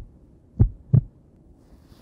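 Heart sounds heard through a stethoscope: a low lub-dub, S1 then S2 about a third of a second apart, a little over half a second in, with the end of the previous beat at the very start. Normal heart sounds, S1 and S2 preserved, with no murmurs.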